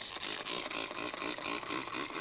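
Trigger spray bottle of waterless dog shampoo being pumped quickly onto a dog's coat: a rapid run of short, hissing spray bursts, several a second.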